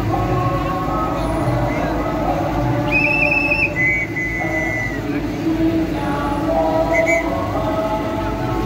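A shrill whistle blown about three seconds in, first as a trilled blast and then as a steadier one, and once more briefly near the end. Beneath it runs the steady noise of a street crowd with a low rumble.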